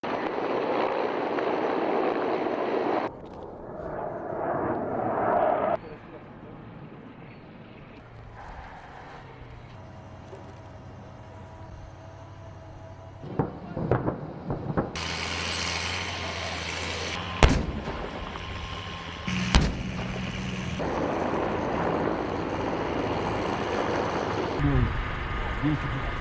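Military weapons firing: several sharp shots or blasts, the loudest two about 17 and 19 seconds in, between stretches of steady vehicle and engine noise.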